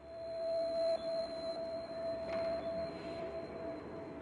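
Background music opening on a steady held tone, like a sustained synth note, with a fainter high tone above it.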